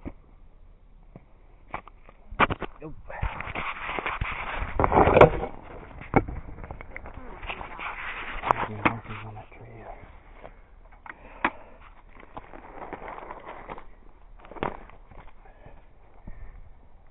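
Footsteps crunching and scrambling through dry leaf litter and brush on rocky ground, with scattered sharp cracks. The loudest, longest rustle comes about four to five seconds in.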